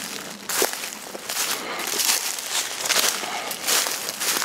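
Footsteps crunching through dry leaf litter, an irregular series of rustling crunches.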